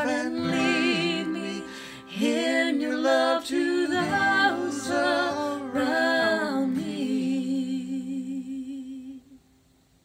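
A woman and a man singing the closing notes of a worship song over an acoustic guitar. The last long note and chord fade out about nine seconds in, leaving near silence.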